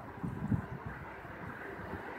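Low, uneven outdoor background rumble, with a couple of small bumps about half a second in.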